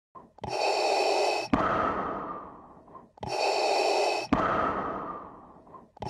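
Darth Vader's respirator breathing: two slow breaths, each an inhale of about a second followed by a longer exhale that fades out, with a third breath starting at the end.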